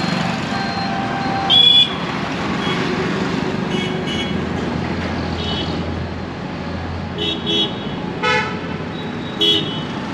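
Road traffic with motorcycles and cars passing, and vehicle horns honking several times: a longer blast about one and a half seconds in, short toots near the middle, and two more near the end.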